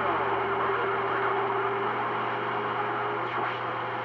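CB radio receiving on channel 28 between transmissions: static hiss with a steady heterodyne whistle that shifts slightly higher in pitch about three seconds in, over a low hum.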